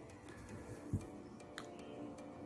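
Quiet pause with a faint steady hum, a soft low thump about a second in and a short click soon after.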